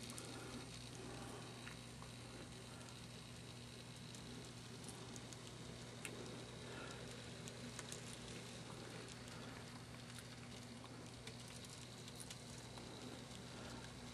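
Faint sound of an N scale model freight train rolling along the track: light, scattered clicks from the cars' wheels over a steady low hum.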